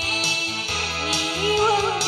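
Pop song backing-track music played over a stage sound system, with a melody line that wavers and rises in pitch in the second half.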